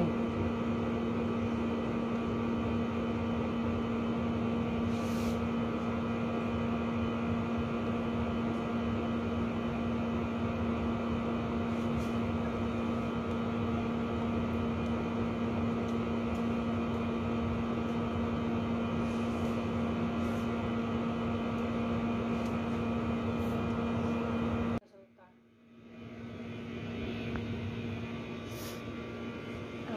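Steady electrical hum from a running kitchen appliance: one low tone with its overtones. It cuts out abruptly near the end, then comes back more quietly.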